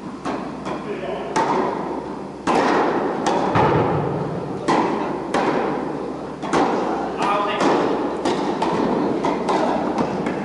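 Tennis balls being struck by rackets and bouncing on the court, a string of sharp pops that ring in the echo of a large indoor hall.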